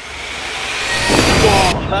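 A whoosh transition sound effect: a rushing noise that swells for under two seconds and then cuts off suddenly.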